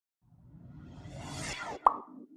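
Logo-reveal sound effect: a whoosh that builds for about a second and a half, ending in a sharp pop near the end.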